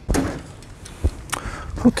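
A few handling knocks: a dull thump about a second in and a sharper click just after it. A man's voice begins at the very end.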